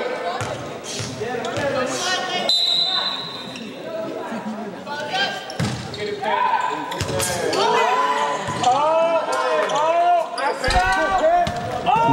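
Volleyball rally in a gym: sharp hits of the ball, players and spectators shouting and cheering, and a referee's whistle held for about a second, about two and a half seconds in.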